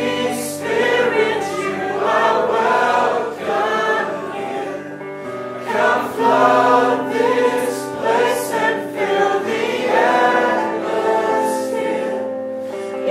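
Live Christian worship song: a woman singing into a microphone over an electric guitar, with held notes sustained underneath the melody.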